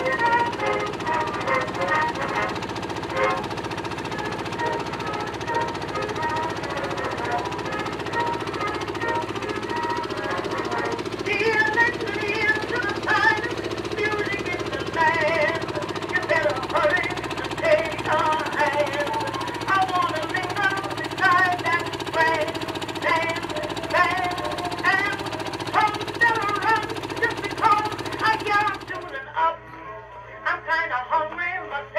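Wooden Dispro launch running under electric power: a steady low hum with water and wind noise. Many short chirps sound over it from about eleven seconds in.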